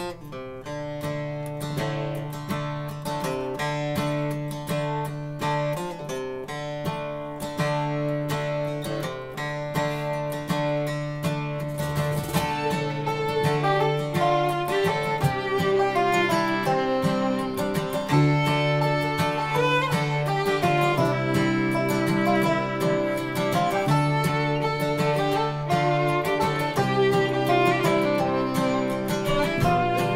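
Acoustic bluegrass band playing a tune, with fiddle, acoustic guitar, upright bass and other plucked strings. It starts right at the beginning and builds over the first few seconds to a steady full level.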